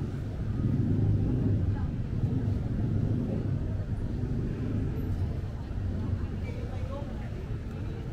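City street ambience: a steady low rumble of vehicle traffic with indistinct voices of people around.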